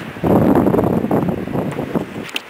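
A loud gust of wind buffeting the microphone. It rushes in about a quarter second in and eases off toward the end.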